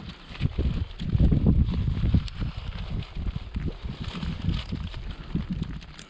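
Wind buffeting the camera microphone as an uneven low rumble, with scattered small knocks and rustles from handling and movement on the gravel.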